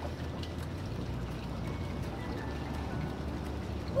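Water gently swishing and lapping in a swimming pool as a swimmer moves slowly through it, over a steady low hum.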